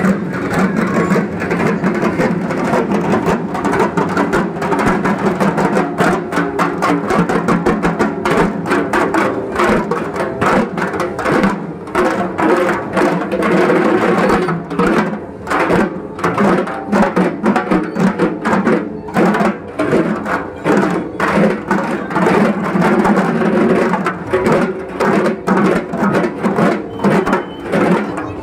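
A troupe of Bengali dhak drums beaten together with sticks in a fast, dense rhythm, the strokes growing sharper and more distinct about a third of the way in.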